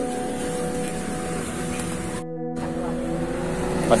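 A steady engine hum of several held tones, like a vehicle idling nearby. It drops out for a moment just past halfway.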